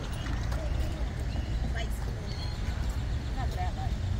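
Wind rumbling on the microphone in an open parking lot, with faint voices talking and a few footsteps on concrete pavement.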